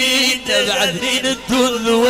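Middle Atlas Amazigh folk music: chanted singing with instrumental accompaniment.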